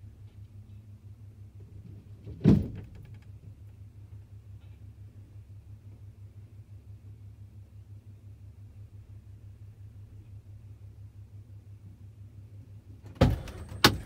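Pickup truck engine idling, a steady low hum heard from inside the cab. A single loud thump comes about two and a half seconds in, and two more thumps come near the end.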